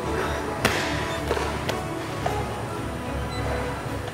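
Background music playing, with one sharp knock about half a second in.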